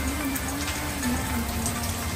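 Heavy rain falling steadily, an even hiss with no break, with soft background music under it.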